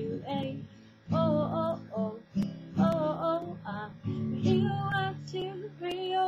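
Acoustic guitar strummed through an A minor, C, G, D chord progression, with a girl singing along over the strums.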